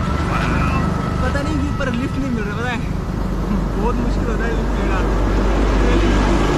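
Steady low rumble of road traffic and wind at a roadside, with a voice rising and falling in pitch over it.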